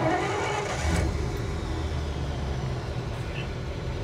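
1953 Pontiac Chieftain's engine running steadily at low revs, heard from inside the cabin, picking up a little about a second in as the car is put under load.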